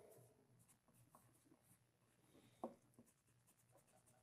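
Faint scratching of a pencil writing on paper, with a light tap a little past halfway.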